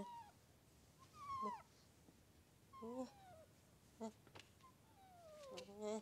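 A kitten mewing, about five thin cries that each fall in pitch, the last one the longest. The cries are faint.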